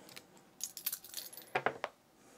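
Three copper coins clinking together as they are shaken in cupped hands for a coin toss: a scatter of light clicks, loudest in a quick cluster near the end.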